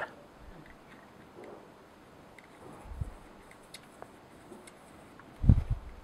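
Faint rubbing and light plastic ticks as an alcohol wipe is worked along the silver bar of a Brother laser printer's FCU and the unit is turned in the hands. A dull low thump comes shortly before the end.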